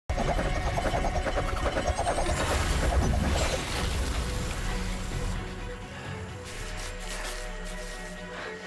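Action-scene soundtrack: a loud, dense burst of crash and blast effects over music, dying down after about four seconds to quieter music.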